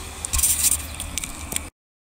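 Rustling and clicking of a handheld camera being handled and reached for, over a low rumble. The sound cuts off suddenly near the end as the recording stops.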